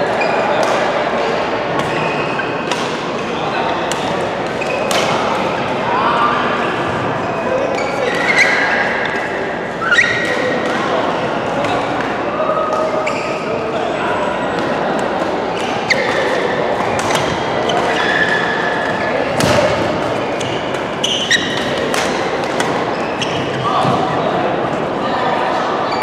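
Badminton rackets striking a shuttlecock in a rally, sharp irregular hits ringing out in a large, echoing sports hall over steady background chatter of players' voices.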